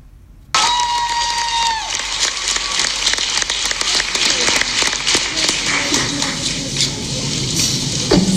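Concert audience applauding and cheering, starting abruptly about half a second in. Right at the start there is one long, high, held shout or "woo" that trails off after about a second.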